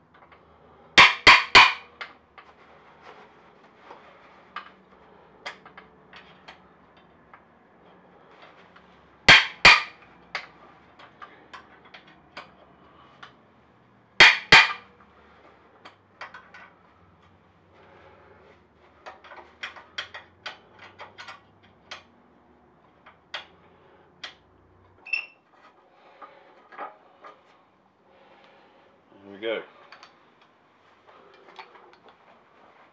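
Hammer strikes on a tool set in a bolt head: three quick blows about a second in, then two near nine seconds and two near fourteen, to break bolts held with the original threadlock. After them come lighter clicks and taps of tools and metal parts.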